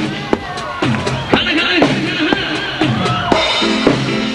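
Band music: a drum kit with bass drum and snare keeping a steady beat under a wavering melody line.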